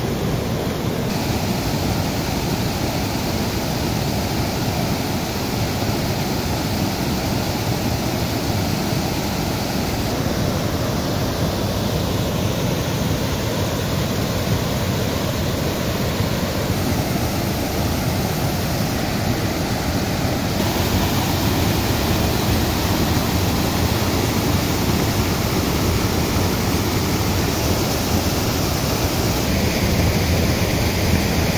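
River water pouring over a low concrete weir, a steady rushing splash of falling sheets of water hitting rock and pooled water below. It grows slightly louder in the last third.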